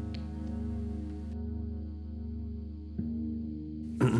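An electric guitar chord sustaining and slowly fading through a chain of analog effects pedals, its overtones wavering. A faint click comes about three seconds in.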